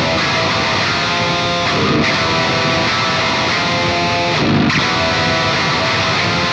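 Electric guitar riff played back from a DI track through the Fractal Audio Axe-FX II amp modeler while it is being re-amped. It plays continuously at an even level, with short breaks in the riff about two seconds in and again about four and a half seconds in.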